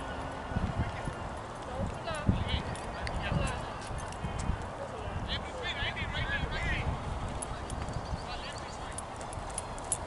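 Wind buffeting the microphone in uneven low thumps, with faint distant voices. A bird trills briefly about two seconds in and again, longer, around five to seven seconds in.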